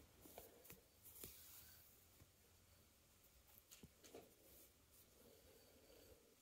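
Near silence, with a few faint clicks and soft rustles of metal knitting needles working wool yarn while stitches are bound off.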